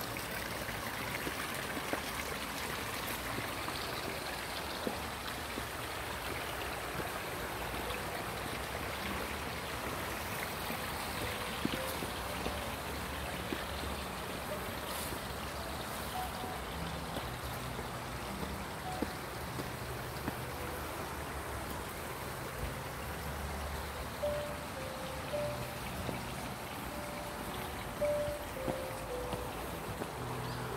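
A small stream running over rocks, a steady rush of water. Faint music plays in the background, clearest in the second half.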